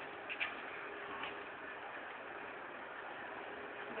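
A few light clicks, about half a second and just over a second in, from a round mosquito-screen frame being handled in its window frame, over steady background hiss.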